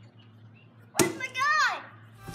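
A sharp knock about a second in, followed at once by a high-pitched child's cry that rises and then falls in pitch.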